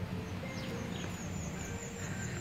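Outdoor background noise with a steady low rumble, and a small bird chirping rapidly and high-pitched, about five chirps a second, starting about half a second in.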